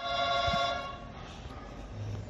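A steady electronic ringing tone, rich in overtones, starts suddenly and fades out over about a second, leaving a faint hiss.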